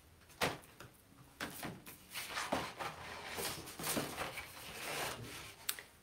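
Large paper sheets being shuffled and handled on a table: a string of short rustles and light knocks.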